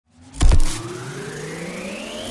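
Electronic intro music: two heavy bass hits about half a second in, followed by a steadily rising sweep in pitch.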